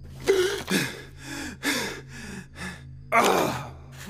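A cartoon character's pained, breathy gasps and groans as he picks himself up off the floor, several short ones and a louder one near the end, over a low steady hum.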